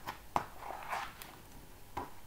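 Page of a picture book being turned by hand: a sharp tap about a third of a second in, then a short rustle of the page.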